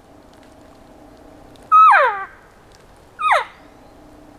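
Cow elk mews blown on a mouth-held elk call: a longer mew about two seconds in that holds its pitch and then drops off, and a short falling one just after three seconds. The mews are varied in length and tone to sound like several cows talking, known as herd talk.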